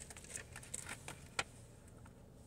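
Faint light clicks and taps of small jigsaw puzzle pieces being handled and fitted together, the sharpest about one and a half seconds in.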